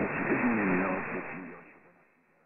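Weak medium-wave broadcast on 783 kHz, tentatively identified as an Iranian station, received in lower sideband on a software-defined radio: faint talk under heavy static and hiss, with the audio cut off above about 2.7 kHz. It fades away during the last second.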